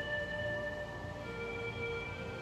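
Soft background music of long held synth tones, with the chord shifting a little past a second in.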